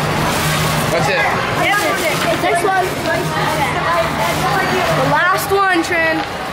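Indistinct talking and background chatter, with a higher voice calling out near the end over a steady low hum.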